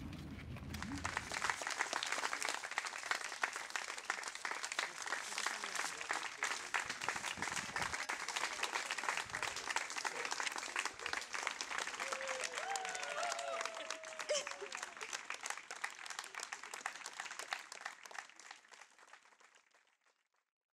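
Audience applauding, a dense, steady clatter of many hands clapping that fades out near the end. A few brief voices or calls rise over it about twelve to fourteen seconds in.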